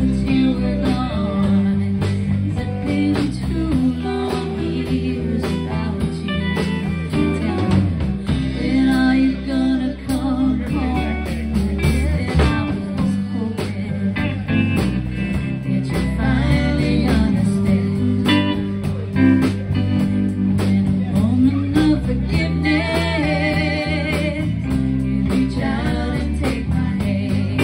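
Live band playing a song with electric guitars, bass guitar and drums, with singing over it.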